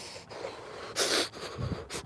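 One sharp, noisy breath about a second in from a person shivering in the cold.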